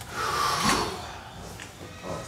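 A side-lying lumbar chiropractic adjustment: the patient's body and the padded treatment table shift under a quick thrust. It comes as one short burst about half a second in and fades within a second.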